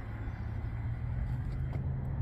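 Steady low rumble of road traffic with a constant low hum underneath.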